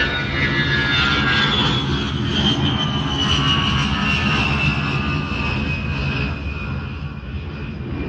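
Jet aircraft flying past: a steady engine rumble with a high whine that falls slowly in pitch.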